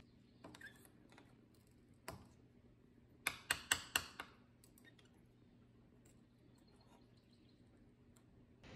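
Faint, light clicks of a small hand tool against the metal top cap of a Fox 2.5 shock reservoir: a single click about two seconds in, then four quick clicks close together a second later.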